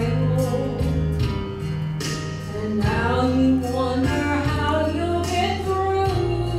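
Women singing a gospel song into microphones over an instrumental accompaniment with sustained bass notes.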